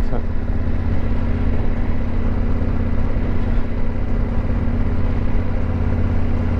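Yamaha Ténéré 700's 689 cc parallel-twin engine running at a steady speed while the bike rides along, with no revving or gear changes.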